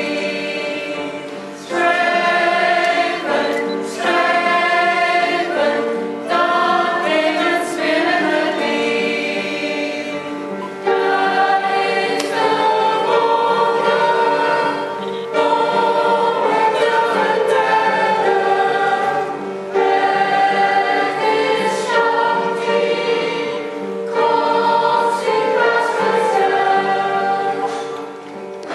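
Mixed choir of men and women singing with piano accompaniment, in phrases a couple of seconds long with short breaks between them; the singing fades away near the end.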